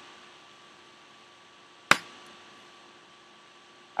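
Faint room tone with a steady low hum, and a single sharp click about two seconds in.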